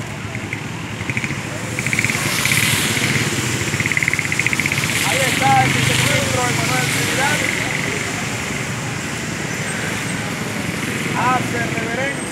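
A motor vehicle passing, its engine noise swelling about two seconds in and easing off after about six seconds, with scattered voices from the gathered people.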